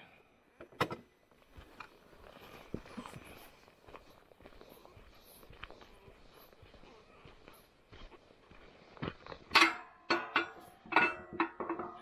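Quiet footsteps on a gravel road, then, in the last couple of seconds, a run of sharp knocks and clatter from a steel swing gate and its padlocked latch being handled.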